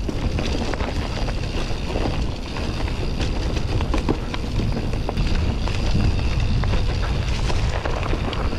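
Orbea Oiz mountain bike rolling along a dirt singletrack, heard as a steady rumble of wind on the microphone with many small rattles and clicks from the tyres and bike over the rough trail.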